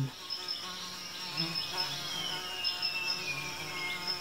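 Flies buzzing: a low, wavering drone with a thin, steady high whine above it and a faint tone sliding down in pitch through the second half.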